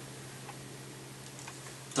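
Faint regular ticking, about one tick a second, over low steady room noise.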